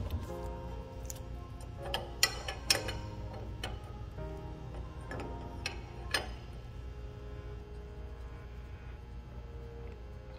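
Background music plays throughout. Over it come about eight metal clicks and taps in the first six seconds, from a wrench working the IPR valve on a DT466 high-pressure oil pump.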